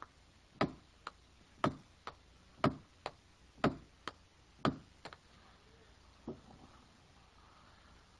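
A small hammer driving a nail: even blows about once a second, most followed by a lighter tap, then one last blow about six seconds in.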